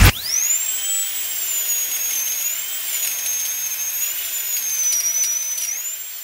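Dental drill whining at a high pitch: it spins up sharply at the start, then holds a steady whine that wavers slightly. The pitch dips a little near the end and climbs back up.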